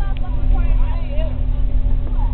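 School bus engine and road noise heard from inside the cabin: a steady low rumble with a constant hum, with passengers' voices chattering over it.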